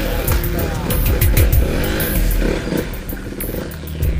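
A motorcycle engine revving up as the bike pulls away hard, its pitch rising about a second in, under background music.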